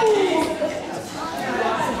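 Indistinct chatter of spectators and players echoing in a gymnasium. In the first half second a drawn-out pitched sound falls away.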